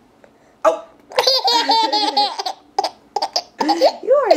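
Eight-month-old baby laughing: a short burst about half a second in, then a long run of rapid, high-pitched laughter lasting about a second, then a few shorter bursts near the end.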